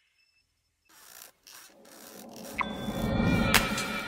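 Silence for about the first second. Then come swishing noise bursts that swell into a rising build, ending in a sharp hit near the end: the start of an electronic logo sting.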